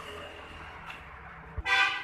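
A low background rumble with a faint steady high whine, a single knock about a second and a half in, then a short, loud horn-like toot of even pitch near the end.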